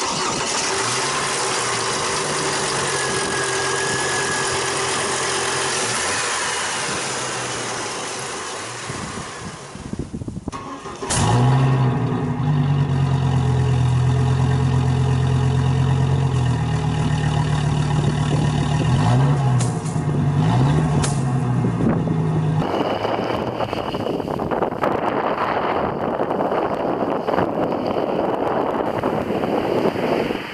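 The 2005 Chevy Colorado's 3.5 L DOHC inline five-cylinder engine idling steadily, heard first at the engine bay, then louder and deeper at the tailpipe. Near the end of the tailpipe part the throttle is blipped twice, a second apart. The last stretch is mostly wind noise on the microphone as the truck approaches from a distance.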